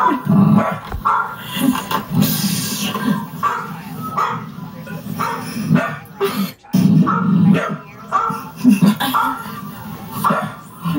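A dog barking again and again in short bursts.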